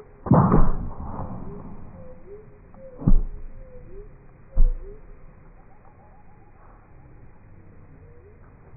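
A loud scraping thud as a vaulting pole is jammed into the planting box, then two sharp knocks about a second and a half apart. A faint short gliding call repeats about once a second underneath.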